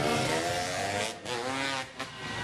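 Freestyle motocross dirt bike engine revving hard as it accelerates past. It breaks off briefly about a second in, climbs again, then drops away just before the end.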